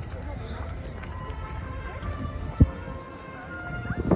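Outdoor hubbub of voices from people nearby and faint music over a steady low rumble, with one sharp thump about two and a half seconds in.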